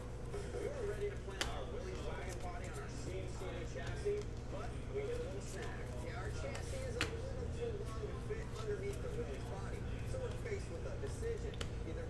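Trading cards being flipped through by hand: a few light clicks and slides of card stock over a steady low hum, with faint indistinct voices in the background.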